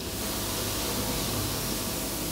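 Steady, even hiss with a faint low hum beneath it.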